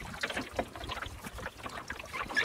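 Water lapping and slapping irregularly against the wooden hull of a small sailing dinghy under way, with a low rumble underneath.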